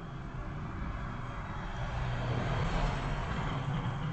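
Low rushing background noise with a rumble underneath, swelling slightly partway through and easing near the end.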